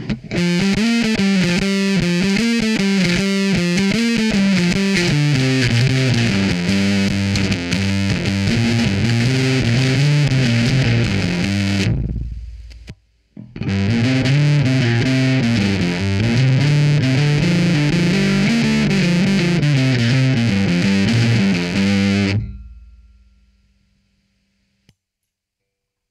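Ibanez SR300E electric bass played through an MXR Classic 108 Fuzz Mini into a clean amp, a heavily fuzzed riff of moving notes. Two passages are played, with a short break about halfway, and the last note rings out and fades near the end.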